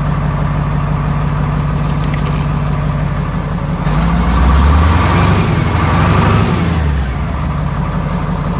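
A 1989 GM truck's Detroit diesel engine idling, then revved up about halfway through and held for a few seconds before dropping back to idle. The rev is to excite a newly rebuilt alternator (new brushes and diode trio) into charging.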